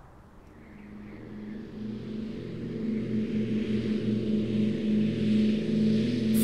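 Twin-propeller airliner's engines droning steadily in flight, fading in and growing louder over the first few seconds.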